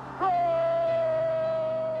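A Brazilian football commentator's long drawn-out shout of "gol!", one held note lasting nearly two seconds, calling Flamengo's third goal.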